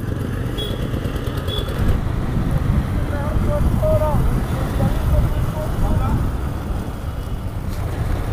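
Motorcycle riding at speed, heard through a helmet-mounted microphone: a steady low rush of wind and road noise over the engine, with a few faint voice fragments about halfway through.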